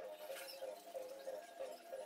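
Faint scratchy rubbing and light squeaks of a tissue wiping the glass face of a phone's LCD panel clean, over a soft, steady pulsing hum.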